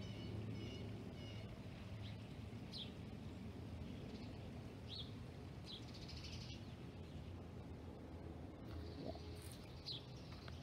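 Songbirds chirping faintly in the background: a quick run of short notes at the start, then a few single chirps spaced a second or more apart, over a steady low hum.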